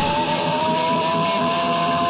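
Heavy metal track breaking down to a single sustained, distorted electric guitar note with no drums; its pitch slowly rises as it is held.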